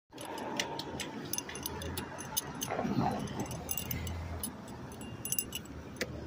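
Street sound at a bus stop: a steady low traffic hum with a quick run of small clicks and rattles close to the microphone.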